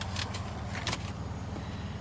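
2016 GMC Canyon's engine idling, heard from inside the cab as a low steady hum, with a couple of faint clicks.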